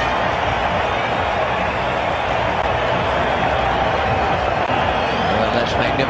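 Steady noise of a large cricket crowd in the stands, an even wash of many voices with no single one standing out.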